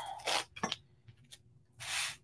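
Soft rustling and rubbing of paper cardstock handled by hand, with a few faint clicks early on and a short, louder rub near the end as the card is slid across the cutting mat.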